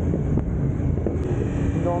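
Motorcycle engine running as the bike rides along a wet street, with wind buffeting the microphone in a steady low rumble.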